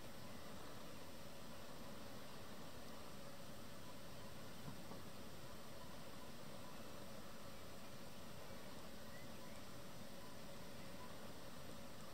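Faint steady hiss of background ambience with a faint constant hum, no distinct events.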